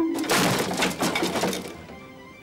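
Crash of wooden mine beams and rock caving in: a sudden start, then about a second and a half of cracking, clattering debris that fades. Music plays underneath.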